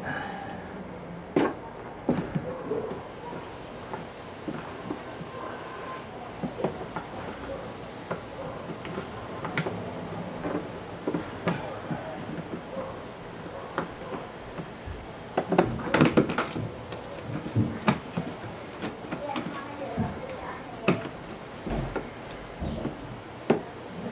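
Plastic mud flap being handled and fitted to a car's wheel arch: scattered light clicks and knocks, with a quick run of knocks about sixteen seconds in.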